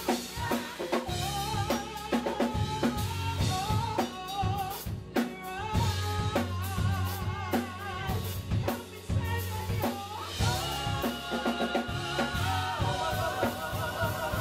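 Gospel praise-and-worship music: a group of women singing into microphones with vibrato, over a steady drum-kit beat and bass.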